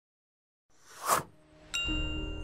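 Silence, then a swelling whoosh about a second in, followed near the end by a bright, ringing chime that opens an outro jingle.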